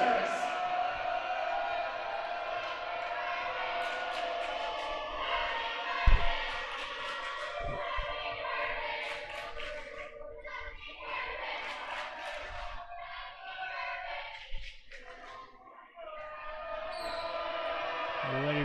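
A volleyball bounced on a hardwood gym floor before a serve, a few sharp thumps with the loudest about six seconds in, over a steady murmur of spectators' voices echoing in the gymnasium.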